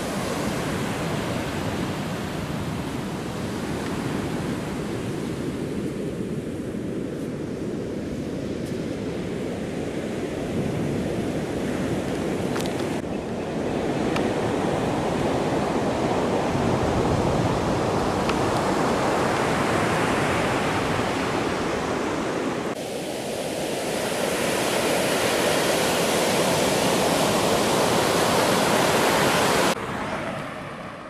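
Ocean surf breaking and washing up a sandy beach, with wind on the microphone. The noise changes abruptly about 13 and 23 seconds in, and is hissier after the second change.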